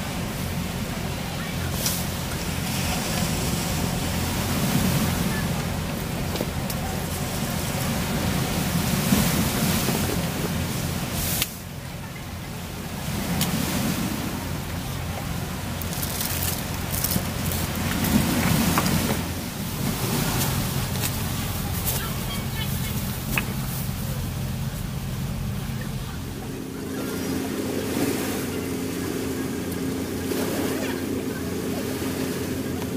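Sea waves washing on a rocky shore in slow swells every few seconds, with wind and a steady low hum underneath.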